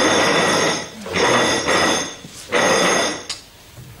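A loud offstage racket in three bursts of under a second each, with a steady metallic ringing running through the noise.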